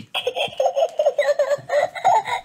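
A voice giggling in a quick run of short 'hee hee' laughs.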